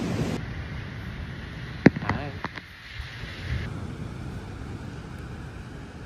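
Steady rush of surf and wind on a phone microphone at a beach, opening with a short laugh. A few sharp clicks come about two seconds in.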